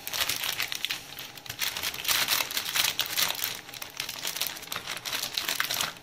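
Clear plastic bag around a box of sweets crinkling as it is handled, a continuous run of irregular crackles.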